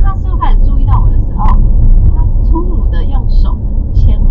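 Car cabin noise picked up by a dashcam while driving at highway speed: a loud, steady low rumble of road and engine. Faint speech is heard over it.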